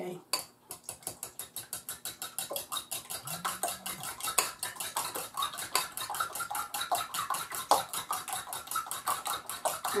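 Eggs being beaten with a fork in a bowl: the fork clicks rapidly and evenly against the bowl, growing a little louder as it goes.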